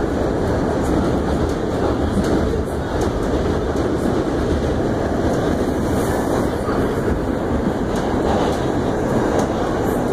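Inside an R68 subway car running at express speed: the steady noise of wheels on the rails, with light clicks of the wheels passing over rail joints.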